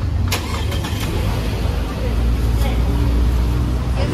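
Steady low rumble of a motor vehicle engine running nearby, with faint indistinct voices and a single sharp click about a third of a second in.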